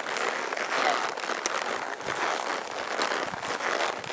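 Continuous rustling and crackling as a horse and rider push along a narrow trail through close brush, with small scattered knocks.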